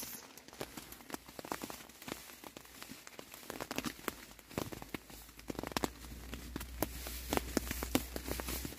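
Faint, irregular crinkling and ticking of nylon sleeping-bag and jacket fabric shifting as a hand strokes a goat lying in its sleeping bag, with a faint low hum coming in about halfway.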